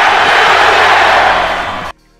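Crowd cheering sound effect, loud, cutting off abruptly near the end.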